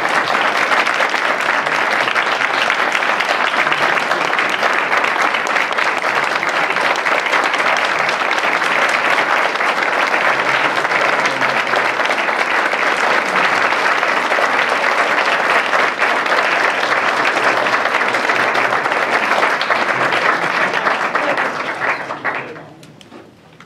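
Audience applauding: a long, steady round of clapping from a roomful of people.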